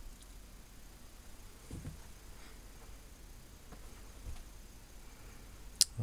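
Faint low steady hum from a Sentinel 400TV tube television running at reduced voltage on a variac, with no sound from its speaker yet. A couple of soft bumps and a sharp click near the end.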